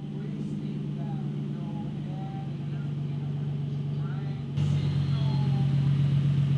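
Nissan 350Z's 3.5-litre V6 idling steadily, stepping louder about three-quarters of the way through.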